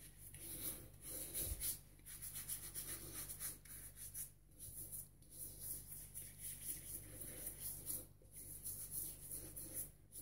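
Fingers rubbing soapy bloom water from a shaving-soap puck into a stubbled face as a pre-shave: a faint, quick, scratchy rubbing of hand over whiskers, stroke after stroke.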